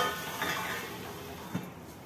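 Stainless-steel lid set down on a steel kadai: a metallic clank with brief ringing near the start, then a softer knock about a second and a half in. A faint sizzle from the pan underneath dies down once it is covered.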